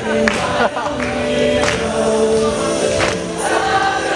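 Music with many voices singing together in held notes, with a sharp hit about every second and a half.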